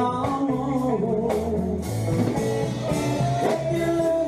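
Live country band playing a slow song: electric and acoustic guitars over a drum kit, with bending guitar lines.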